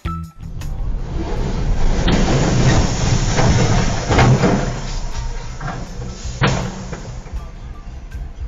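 Heavy steel coils crashing off a truck trailer and rolling across the road, a loud rumbling din over car road noise, loudest a few seconds in, with sharp knocks about two seconds in and again near six and a half seconds.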